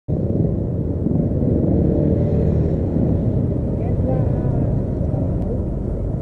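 Steady low rumble of road traffic on a busy street, with faint voices about two-thirds of the way in.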